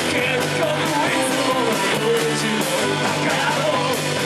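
Live Irish punk band playing a fast song, with accordion, electric guitar and drums together at a steady loud level.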